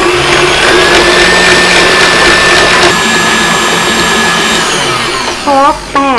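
KitchenAid tilt-head stand mixer running at top speed with a steady motor whine, whipping egg white and hot sugar-gelatin syrup into marshmallow fluff. Near the end the whine falls in pitch and the motor stops.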